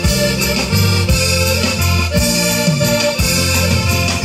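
Live band playing an instrumental passage: an accordion carries the melody over a bass line and a drum kit keeping a steady beat.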